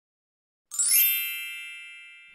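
A bright chime sound effect begins about two-thirds of a second in: a quick shimmer into several ringing high bell-like tones that slowly fade.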